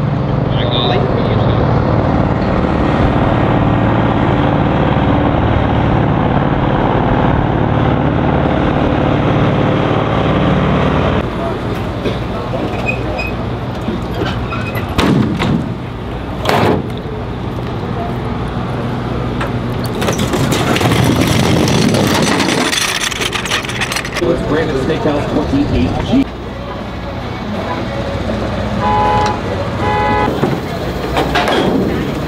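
A vehicle engine runs steadily for about the first ten seconds. Then come two sharp metal clanks from an aluminium trailer ramp being handled, a rush of noise, and a short two-tone toot near the end.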